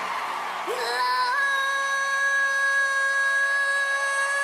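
Ventriloquist singing through a mouse puppet, scooping up into one long, high belted note about a second in and holding it steady to the end, over a musical backing track.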